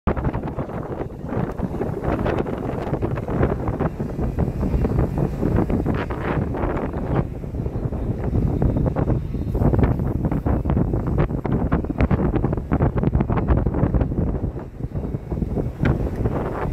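Wind buffeting the microphone on the open deck of a motor yacht under way: a loud, uneven rumble with irregular gusts throughout.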